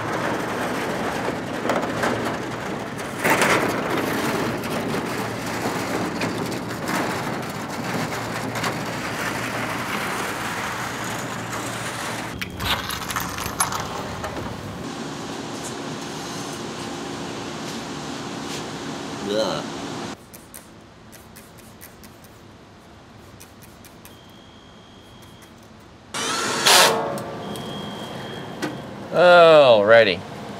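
A loose corrugated metal roofing panel dragged and scraped across gravel, a rough rasping noise for about the first twelve seconds. After that comes a quieter steady hum.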